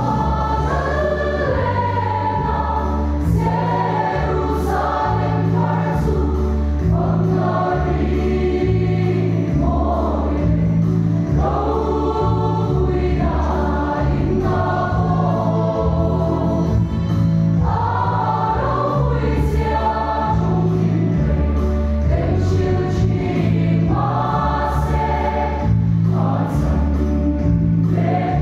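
Large mixed church choir singing a hymn in sustained phrases, over a low instrumental bass line.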